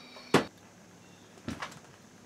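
A single sharp click or knock about a third of a second in, then two fainter clicks close together about a second later, over faint room tone.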